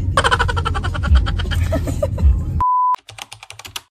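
Keyboard typing sound effect: rapid key clicks over a low rumble for the first two and a half seconds. Then a short, steady, loud beep, followed by a brief run of quicker clicks that stops shortly before the end.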